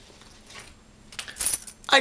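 A small bunch of keys on a ring jangling as they are held up and shaken: a quick run of light metallic clinks in about the last second.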